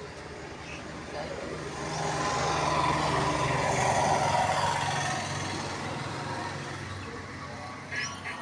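A motor vehicle passing on the road. Its engine hum and road noise swell to a peak about three to four seconds in, then fade away.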